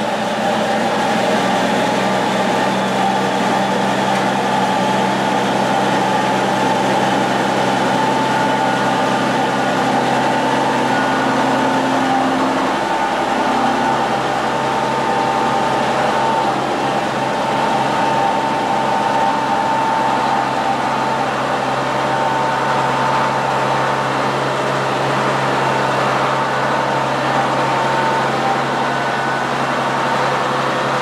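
New Holland 1915 forage harvester's engine running steadily inside a shop, with a constant whine over the engine note.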